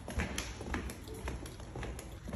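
Footsteps in flip-flops on a hard plank floor: the sandals slap and tap against the floor and heel at a walking pace, a few sharp clicks in two seconds.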